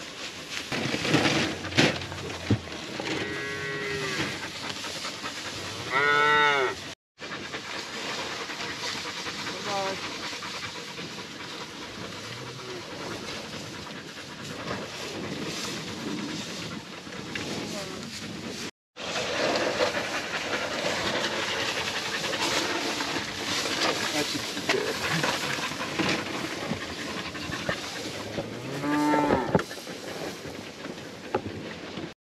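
Cattle mooing several times in a pasture, with a loud call about six seconds in and another near the end, over steady outdoor noise.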